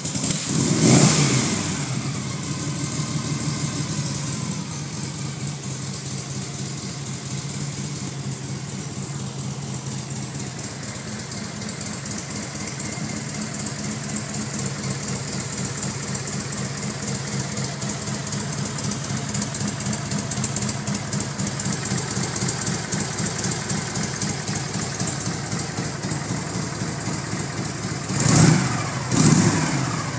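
1965 Harley-Davidson Panhead Electra Glide's V-twin engine catching on a kick start, its first start in three years. It revs up and falls back about a second in, then settles into a steady idle, with two quick throttle blips near the end.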